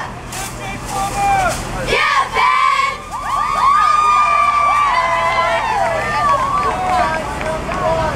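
Cheerleading squad yelling and cheering together, a few scattered calls at first, then many high voices overlapping from about three seconds in.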